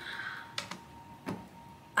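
A few light, separate clicks, about three, like buttons or keys being pressed at a desk, over a faint steady high-pitched tone.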